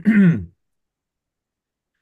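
A man clearing his throat once, briefly, with a falling pitch.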